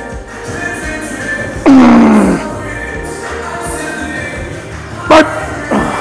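A man's loud strained groan, falling in pitch, about two seconds in, and a short sharp grunt near the end: the effort of pushing through heavy leg press reps. Background music plays throughout.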